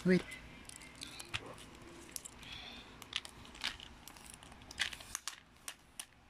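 Plastic wrapping crinkling and scattered light clicks as small hands handle a red plastic container, after a single spoken word at the start.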